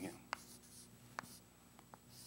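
Chalk writing on a chalkboard: faint scratching strokes, with three sharp taps as the chalk strikes the board.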